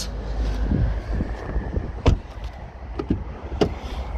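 Knocks and a thump from handling a car's doors and trim while moving from the rear seat to the open front door, the loudest knock about two seconds in, over a low rumble of movement.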